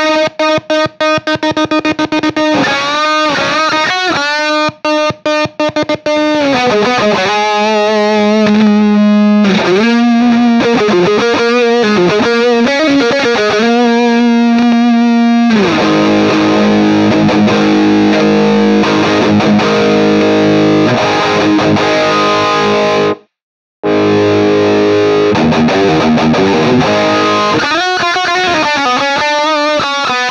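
Epiphone SG Special electric guitar played through heavy distortion: single-note lead lines with string bends over a held low note, then dense sustained chords from about halfway. The sound cuts out completely for about half a second around two-thirds through, then the chords resume and turn back to picked notes near the end.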